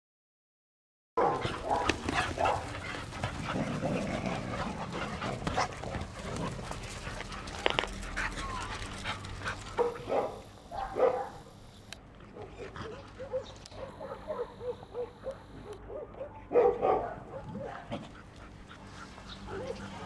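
Dogs barking and yipping in short irregular bursts, starting suddenly about a second in.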